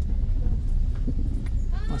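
Low, steady rumble of a car rolling slowly over a cobblestone street, heard from inside the car, with faint knocks from the paving stones. A voice comes in at the very end.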